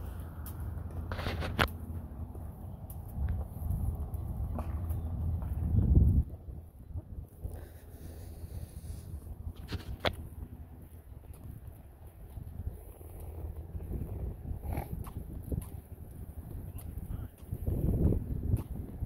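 Wind buffeting a handheld phone's microphone outdoors as a low, uneven rumble, heaviest in the first six seconds, with scattered short clicks and knocks from walking and handling.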